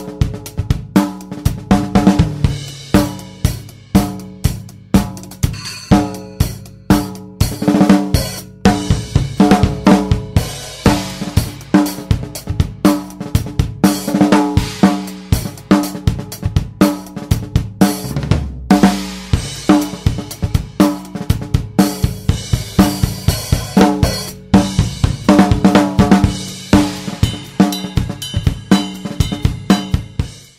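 A funk drum-kit beat played on its own, as the isolated drum part of a song: kick, snare, hi-hat and cymbals in a steady, repeating groove.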